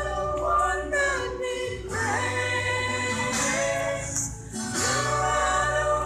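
A congregation singing a worship song together, in phrases broken by short pauses, over a steady low accompaniment.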